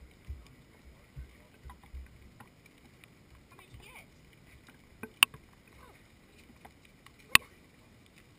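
Two sharp knocks about two seconds apart, the second the louder, after a few soft low thuds in the first couple of seconds.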